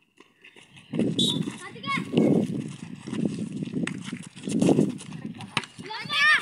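Children shouting and calling out during a basketball game, over irregular thuds of running feet on the concrete court. This begins about a second in, after a near-quiet start.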